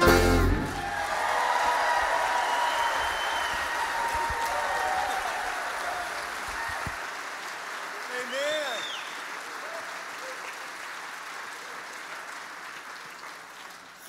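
Congregation applauding after a male quartet's song, starting just as the song's final low bass note cuts off. The clapping slowly fades, with a single rising-and-falling cheer about eight seconds in.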